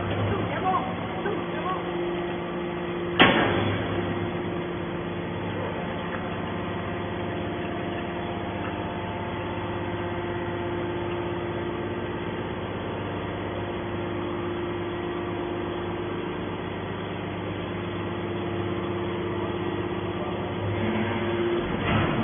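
Hydraulic metal scrap baler running: a steady hum from its hydraulic pump as the ram pushes a compressed bale of scrap metal out of the chamber, with one loud metallic clunk about three seconds in.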